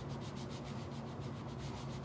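A ruler pressed and rubbed over a hot-glued burlap fold on kraft paper: a soft, scratchy rubbing, over a low steady hum.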